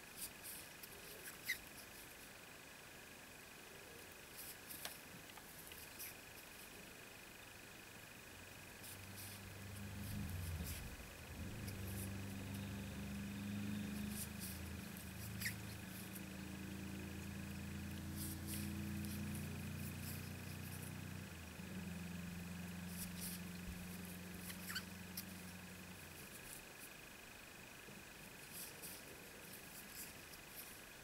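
Faint small clicks and rustles of a crochet hook working thread, under a faint steady high whine. A low droning hum comes in about a third of the way through, shifts in pitch, and stops before the end.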